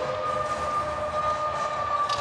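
Arena goal horn sounding one long, steady note that sags slightly in pitch near the end, over crowd noise, signalling a home-team goal.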